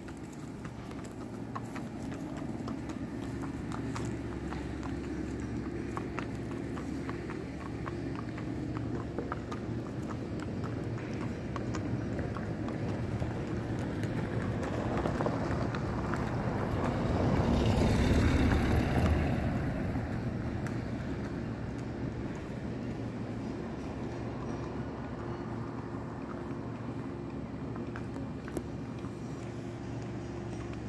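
Steady low engine hum throughout. A passing vehicle swells up to its loudest a little past the middle and then fades away.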